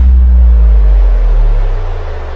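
A loud, deep bass boom whose pitch slides steadily down as it fades: a sub-bass drop used as a transition in the soundtrack.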